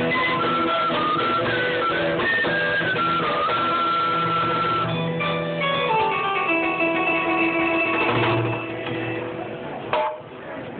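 Small early-music ensemble of recorders with plucked harpsichord and bassoon playing: long held recorder notes over plucked accompaniment, a falling run about halfway through, then a final held chord that fades and stops just before the end.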